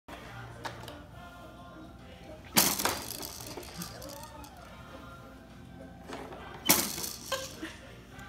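Two sudden, loud clatters of hard plastic toys being struck, about four seconds apart, each with a short ringing tail, over faint music.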